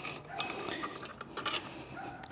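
A few light metal clicks and clinks of the seat-post mounting hardware being handled and fitted onto the deck of a Hiboy S2 electric scooter.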